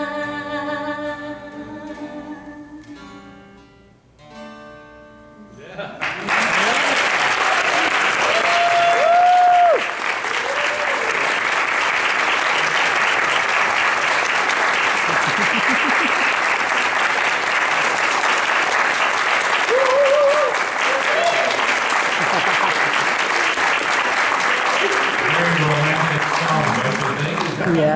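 A woman's sung final note over acoustic guitar fades out, with a last guitar sound after it. About six seconds in, an audience breaks into loud, sustained applause with a few cheers.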